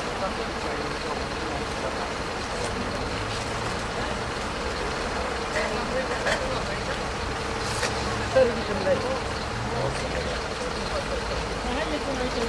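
Steady outdoor background rumble and hiss, with people's voices talking indistinctly now and then and a brief louder sound about eight seconds in.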